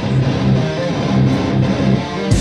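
Live metal band's electric guitars and bass playing a riff of changing notes, with little or no drumming heard under it.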